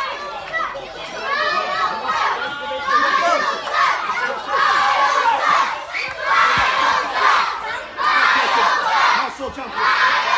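Ringside crowd of spectators, many of them children, shouting and yelling in repeated surges, with many voices overlapping.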